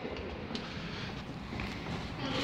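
Low, steady rumble of wind noise on the microphone of a handheld camera, with a faint tap about half a second in.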